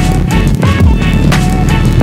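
Electronic music with a heavy, steady beat and deep falling bass notes.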